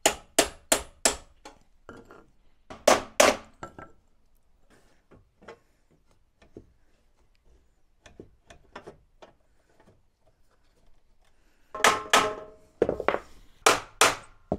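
Hammer blows on a flat steel bar, bending over a tab on a steel door-frame section: a quick run of about five strikes, two loud strikes about three seconds in, lighter knocks and handling, then a burst of loud strikes near the end with a brief metallic ring.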